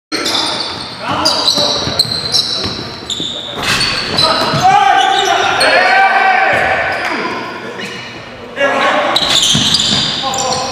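Live indoor basketball game sound: a basketball bouncing on a hardwood gym floor, sneakers squeaking, and players calling out, all echoing in the hall.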